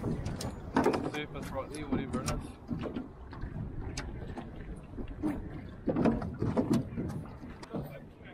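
A fishing reel being wound in against a hooked fish, its mechanism clicking, with scattered knocks and low voices in the boat.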